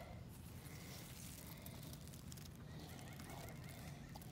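Faint outdoor ambience: a low steady rumble and hiss, with a faint thin high tone for a moment in the middle.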